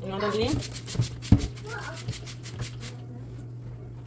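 A trigger spray bottle of cleaner spritzing over a stainless steel sink in a quick run of short hisses, with a sharp knock just over a second in.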